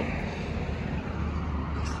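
A steady low rumble of a vehicle engine running, over outdoor background noise.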